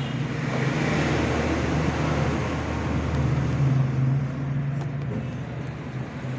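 Steady background rumble with a broad hiss over a low hum, like road traffic or a running machine, swelling about half a second in and easing near the end.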